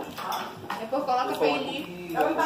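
Several people talking at a meal table, with a sharp clink right at the start and a few lighter clinks of spoons and forks on plates.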